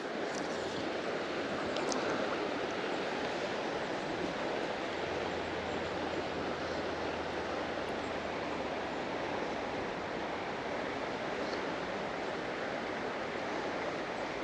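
Steady rush of river water flowing, an even noise without breaks, with a faint low drone underneath for a few seconds in the middle.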